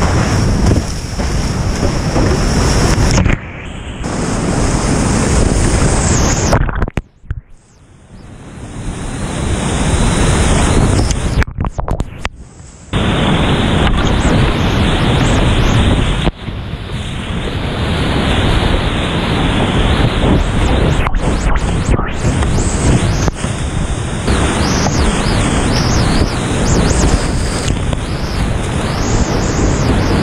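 Loud, steady rush of whitewater rapids heard from a kayak, with water splashing over the boat and wind on the camera microphone. About seven seconds in, and again near twelve seconds, the sound suddenly goes dull and quiet for a moment before the rush comes back.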